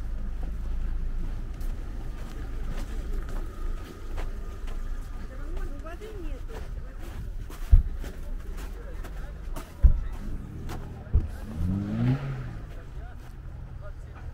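Car engine idling nearby, its low rumble fading over the first few seconds, with footsteps on packed snow and faint distant voices. Three sharp thumps land about 8, 10 and 11 seconds in.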